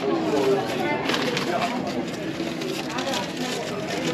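Voices in a busy street, with a thin paper sweet bag crinkling as it is handled and opened.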